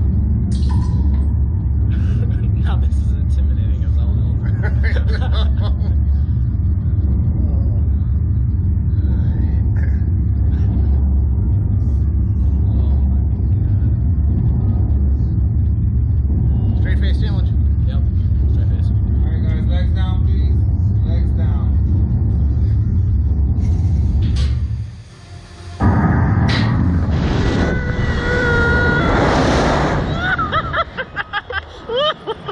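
Slingshot ride capsule held on its pad with a steady, loud low rumble. About twenty-five seconds in the rumble drops away for a moment. Then the capsule launches into a rush of wind noise with a few thin whistling tones.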